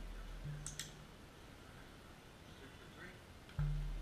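A low steady hum that cuts off about a second in and comes back abruptly near the end, louder. A sharp double click sounds about 0.7 s in, and a fainter one near 3 s.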